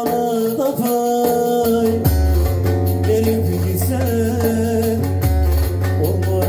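Slow Turkish folk song in an instrumental passage: a plucked lute carries an ornamented melody over a sustained low bass, with light hand-drum strokes.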